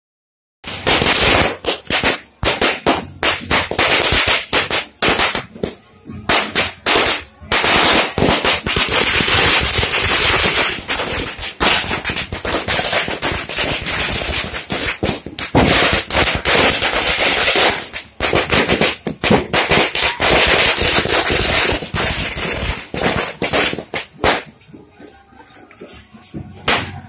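Firecrackers set off on the ground, a long run of rapid, very loud cracks and bangs packed closely together, thinning out and stopping near the end.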